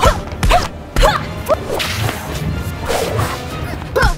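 Fight-scene swishes of swung punches and kicks, several in quick succession, with sharp hits among them.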